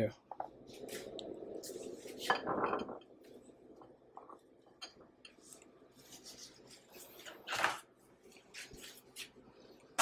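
Glass bowls being moved and set down on a countertop: a scraping slide in the first few seconds, then scattered light clinks and knocks, with one louder knock past the middle.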